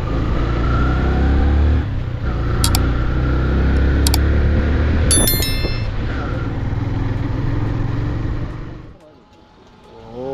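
Yamaha motorcycle running at road speed, its engine rumble mixed with wind noise on the microphone. A couple of sharp clicks and then a short stepped chime come from a subscribe-button sound effect about five seconds in. The sound fades out shortly before the end.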